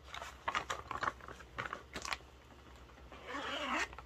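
Small crinkling rustles and clicks of a zippered fabric tote being handled and turned over, with a longer soft rustle near the end.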